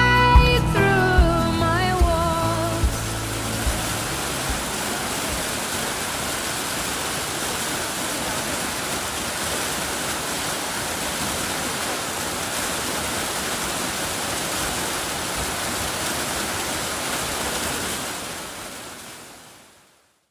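A song's last notes ring out and fade over the first few seconds, then the steady rush of a waterfall, which fades out near the end.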